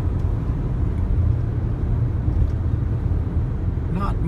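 A car driving along a rural road, heard from inside the cabin: a steady low rumble of road and engine noise.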